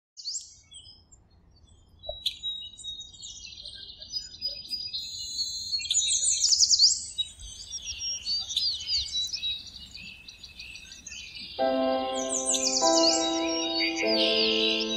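Many birds chirping and trilling in quick high calls and pitch sweeps. About three-quarters of the way through, a soft held music chord comes in beneath the birdsong.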